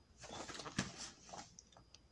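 Soft rustling and a few light clicks: handling noise from a phone being moved about in the hand.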